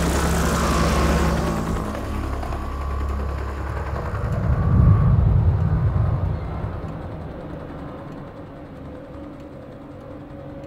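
A bus driving past, its engine rumble and road noise fading away over the first few seconds, under a dark, low music score that swells about halfway through and then dies down to a quiet held tone.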